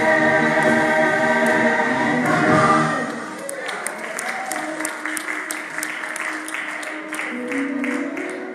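Gospel choir singing a held chord together. About three seconds in it breaks off and gives way to quieter keyboard and voices over a regular sharp beat, about three strokes a second, typical of rhythmic hand-clapping.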